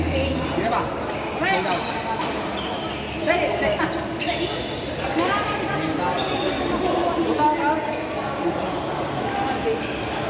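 Voices of players talking in a large indoor badminton hall, with scattered sharp racket-on-shuttlecock hits from play on the courts.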